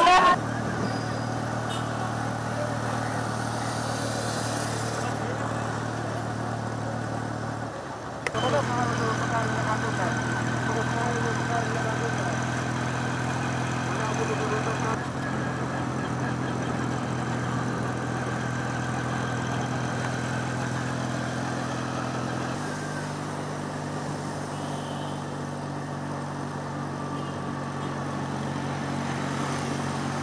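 A motor vehicle's engine running steadily at constant speed, a close, even hum. It breaks off briefly about eight seconds in, then steps to a slightly different pitch about three-quarters of the way through.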